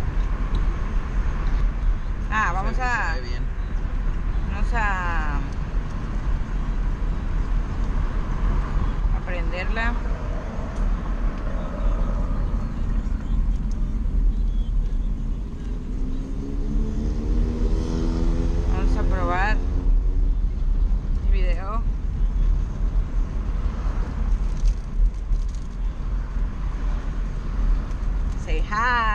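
Car cabin noise while driving: a steady low road and engine rumble, with the engine note rising in the middle as the car picks up speed. Short snatches of voices come and go.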